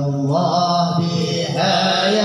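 Men chanting a sholawat, an Arabic devotional song to the Prophet, in long drawn-out sung notes, with a lead voice on a microphone.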